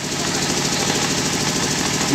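An engine running steadily with a fast, even pulse. It comes in suddenly at the start.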